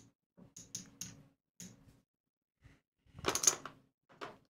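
Casino chips clicking as they are picked up and moved on a felt craps layout: several separate light clicks, then a louder clatter of chips near the end.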